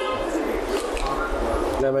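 Steady noisy kitchen background at a grill counter, with faint voices. A man speaks briefly near the end.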